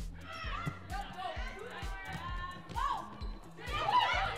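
Indoor volleyball rally heard over arena background music with a steady low beat, about two pulses a second. Faint voices run underneath, and a few sharp slaps of the ball being played cut through.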